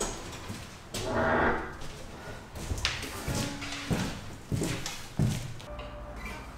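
Boot footsteps and a series of knocks and thuds on a school bus's bare metal floor as a man carrying an acoustic guitar walks in and settles onto a wheeled stool, with a scraping rustle about a second in. The guitar's strings ring briefly and faintly when bumped.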